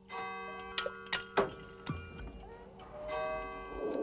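A bell struck twice, about three seconds apart, each strike ringing on for a long time. A few sharp knocks come between the two strikes.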